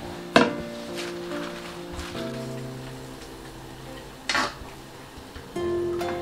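Background music, with two sharp metal clanks about four seconds apart: a metal spatula or ladle knocking against a steel wok of boiling dumplings and cabbage.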